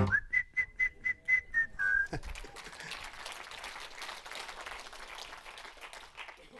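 A single held whistle note lasting about two seconds, dipping at its end, over the first claps of audience applause. The applause then carries on as a light, steady clapping.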